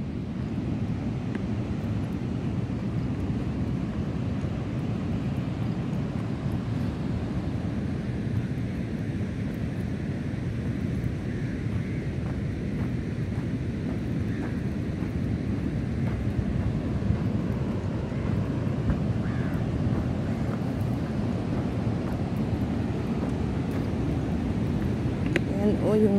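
Steady rushing noise of wind on the microphone mixed with the wash of big surf breaking on a sandy beach.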